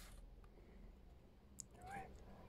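Near silence over a low steady hum. Near the end comes a faint click, then a short high-pitched vocal call lasting about half a second that rises and falls in pitch.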